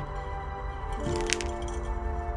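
Background music with sustained notes. About a second in there is a brief crackle of potting soil being pressed down by hand into a small bonsai pot.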